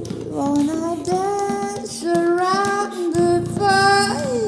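A woman's voice singing wordless held notes that step up and down in pitch, in a tribal chant style. Underneath runs a steady low drone and a clicking percussive beat.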